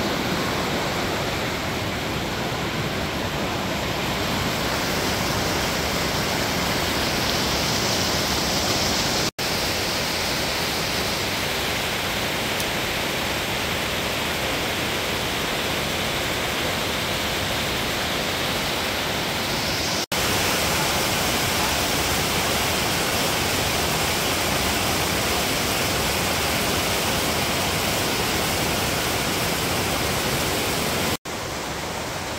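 Rocky mountain creek rushing over cascades below a waterfall: a steady, loud wash of falling water. It cuts out for an instant twice, about nine and twenty seconds in.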